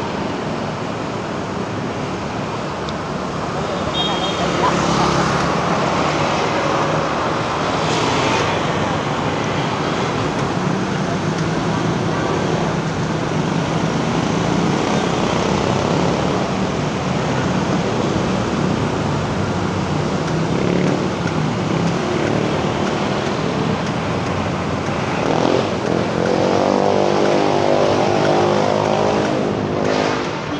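City street traffic heard from road level: motorcycles and light vehicles running and passing close by, with tyre noise on the asphalt. Near the end a passing engine's pitched note grows louder for a few seconds.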